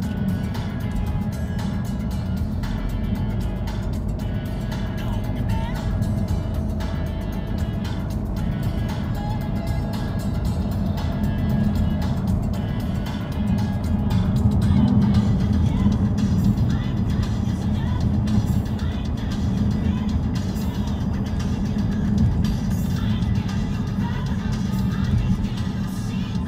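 Steady road and engine rumble inside the cabin of a moving 2017 VW Tiguan turbodiesel, with music playing over it.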